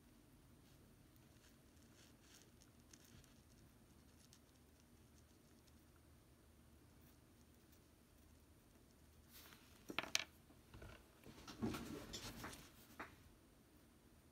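Near silence for most of it, then, from about ten seconds in, a few seconds of light scratching and tapping: a tube of speaker adhesive being worked around a foam speaker surround.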